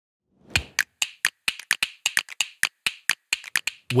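A quick, uneven run of sharp clicks, about six a second, like a stack of pieces snapping into place. This is a sound effect for an animated logo. It starts about half a second in and stops just before the voice comes in.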